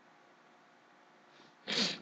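Near silence, then near the end a short, breathy burst from a woman, without words.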